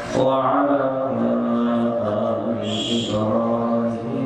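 A man chanting an Arabic invocation in long, drawn-out melodic notes into a microphone, in the sung opening of a sermon.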